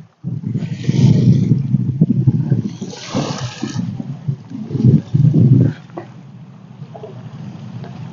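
Gusty wind buffeting the microphone, with sea water washing and splashing against a concrete breakwater. The loudest surges come in the first two seconds, again around three and five seconds in, then settle to a steadier, quieter wash.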